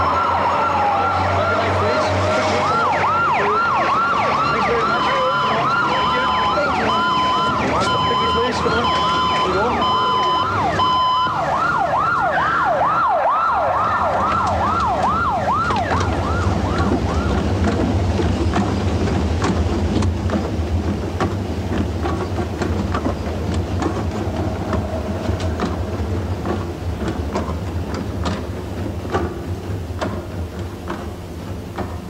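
Emergency-vehicle sirens, fire-engine type, sounding over traffic: a slow rising-and-falling wail and a fast yelp at once, with an on-off electronic beeping alarm tone alongside for the first third. The wail and beeping stop about a third of the way in, the yelp fades out just past the middle, and a low engine rumble carries on.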